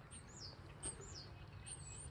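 Faint, high-pitched songbird chirps: a few short falling notes, then a longer high whistle near the end, with a soft click just before a second in.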